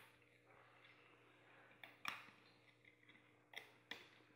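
Faint scattered clicks of rubber bands slipping off the plastic pegs of a Rainbow Loom as the finished piece is worked off by hand. One click about two seconds in and two more near the end, over near silence.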